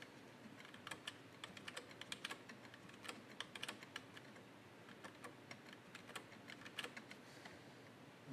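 Computer keyboard keys pressed in quick, irregular runs of faint clicks, starting about a second in and running until shortly before the end.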